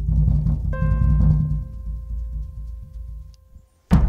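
Instrumental music: long held notes over a deep low drum rumble, with a new chord about a second in that fades away shortly before the end. A sudden loud burst comes right at the end.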